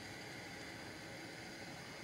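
Faint, steady hiss of a gas torch flame burning.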